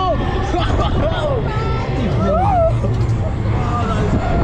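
Wind rushing across the microphone of a fairground thrill ride in motion, with riders letting out short wordless shouts and exclamations; one drawn-out rising and falling cry a little past two seconds in.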